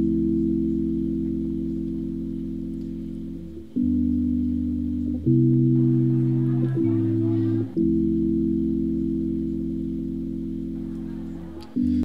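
Song intro of slow, held keyboard chords in a low register, a new chord every one to four seconds, each fading slowly; a loungy sound.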